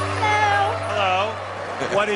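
Background music fading out under a high-pitched voice making two short sounds with a sliding pitch, about half a second apart, in the first second or so.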